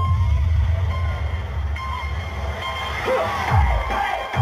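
Dance music played loud over a sound system, with a heavy, sustained bass line. Deep kick-drum beats come in near the end.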